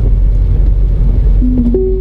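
Steady low drone of the Citroën C4 Grand Picasso's HDi diesel engine and tyres inside the moving cabin. Near the end, a two-note electronic beep, a low tone then a higher one, from the car's voice-command system.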